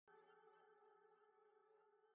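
Near silence, with only a very faint, steady drone of several held tones.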